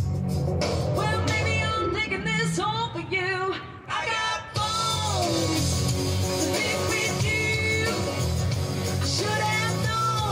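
A woman singing a rock song live into a microphone, amplified through a PA with a band backing her. The sound dips briefly about four seconds in, then the full band and vocal come back.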